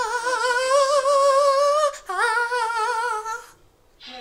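A girl singing unaccompanied, holding two long wordless notes with a wavering vibrato, broken by a short breath about halfway through; the voice stops shortly before the end.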